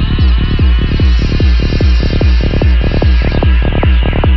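Dark psytrance music: a fast, even rolling bass line with kick drum under layered steady synth tones and wavering, pitch-bending synth sweeps.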